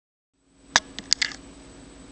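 Four short, sharp clicks and taps in quick succession, the first the loudest, over a low steady hum that starts about half a second in.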